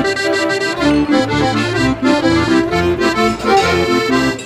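Accordion playing a folk tune, short held notes and chords changing several times a second over a steady bass line.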